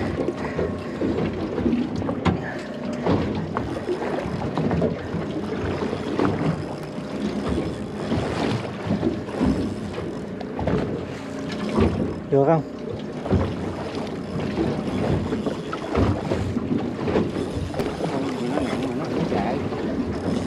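Small boat adrift at sea, with water slapping the hull, wind on the microphone and scattered small knocks. Brief voices are heard around the middle.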